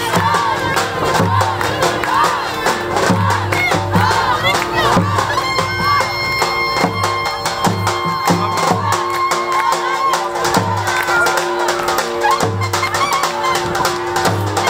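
Loud dance music with a repeating drum beat and a wavering melody, with a crowd of voices shouting and cheering over it.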